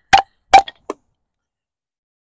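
Two sharp chops of a Takumitak Charge D2 steel tanto knife cutting through a thin wooden stick into a wooden stump, about half a second apart, followed by two lighter taps.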